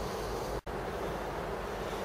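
Steady wind noise on a handheld camera's microphone, with a momentary dropout about half a second in.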